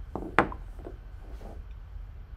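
A tasting glass knocking down onto a wooden desk: a soft tap and then a sharp knock about half a second in, followed by faint handling sounds of the glassware.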